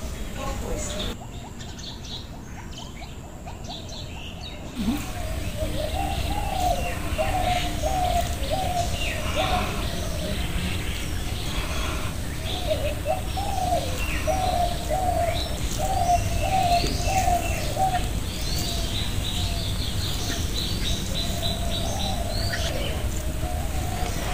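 Outdoor birdsong: from about five seconds in, one bird repeats a short rising-and-falling call over and over, with quicker, higher chirps from other birds, over a low steady background hum.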